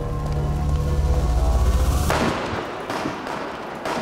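A low, steady dramatic music drone that breaks off about two seconds in into a volley of gunshots, which echo and fade away, with a couple of further shots.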